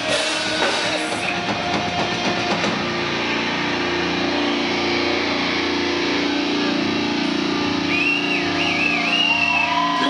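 Live heavy metal band with drums and distorted electric guitars finishing a song: the drum hits stop after about a second and a held chord rings out. A high wavering whoop comes over it near the end.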